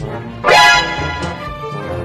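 Background music with a single loud, short dog bark about half a second in.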